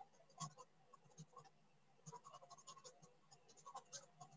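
Near silence with faint, scattered small clicks and scratches throughout.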